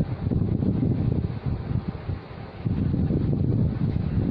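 Air buffeting the microphone: a gusty low rumble that rises and falls, easing briefly a little over two seconds in.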